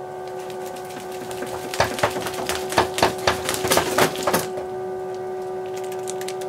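Small electric bilge pump running at low power from a bench supply, a steady hum, pumping icy water through garden hose. From about two seconds in until about four and a half, a run of irregular clicks and knocks sits over the hum.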